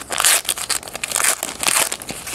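A trading card pack's wrapper being torn open and crinkled by hand, in a string of irregular crinkling bursts.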